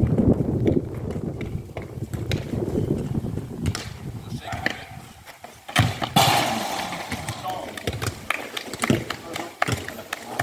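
Voices and laughter, then a football struck hard on a penalty about six seconds in, followed by a brief loud burst of noise.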